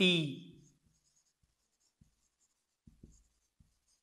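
Marker pen writing on a whiteboard: faint scratching of the tip, with a few soft taps about two, three and three and a half seconds in.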